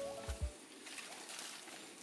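Background music fades out in the first half second with a short tone and two low thumps. Then faint forest ambience with light, scattered crackles and rustles of footsteps on leaf litter as hikers climb over a fallen log.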